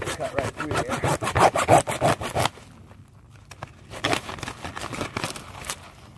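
Hacksaw cutting through EZ Flow foam-aggregate drain pipe: rapid back-and-forth strokes of the blade through the foam peanuts and corrugated plastic pipe. The strokes break off about two and a half seconds in, then resume more lightly.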